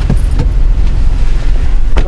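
Loud low rumble inside a car's cabin, with a couple of faint clicks in the first half second.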